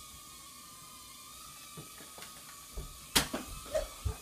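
Scattered knocks and thuds, with one loud sharp bang about three seconds in, over a faint steady whine.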